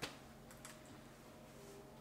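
Near silence with a faint steady room hum, a sharp click at the start and a couple of faint clicks about half a second later.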